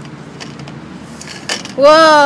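A couple of short knocks from the beads of a playground bead-frame abacus being pushed along their rods. Near the end a person's voice starts a loud, long held call that falls slightly in pitch, the loudest sound here.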